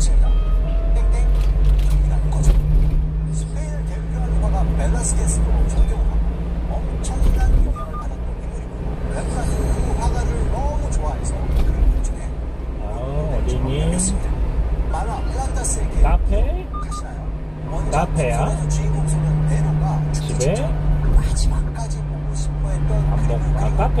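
Engine and road rumble inside a moving one-ton truck's cab in city traffic, with indistinct voices from the cab's audio underneath.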